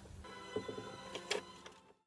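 Small sharp metal clicks and taps, about four of them, from a screwdriver working a metal ukulele gear peg fitted into a violin body. They come over a set of steady high held tones, and the sound cuts off just before the end.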